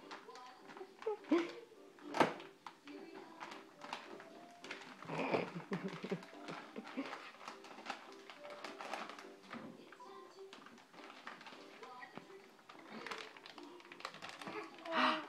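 A toddler's wordless babbling and a few sharp knocks as she handles things at an open refrigerator, over faint background music.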